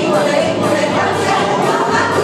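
Women's folk choir singing a song together, with accordion accompaniment.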